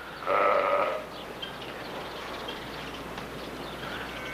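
A single bleat from a farm animal, under a second long, shortly after the start, over a faint steady outdoor background.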